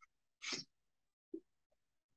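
A man's single short, sharp breath noise about half a second in, followed a little later by a faint low blip.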